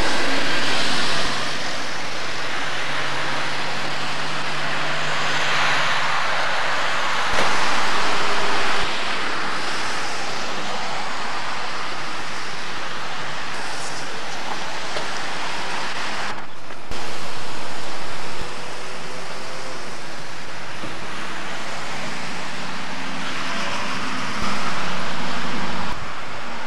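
Outdoor traffic and car engine noise with wind rushing over the microphone, a steady noisy wash with a faint low engine hum. The sound jumps abruptly in level several times where the footage is cut.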